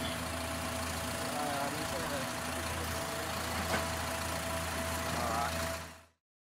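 A motor vehicle's engine idling steadily, a constant low hum with a steady mid-pitched tone over it, fading out at the very end.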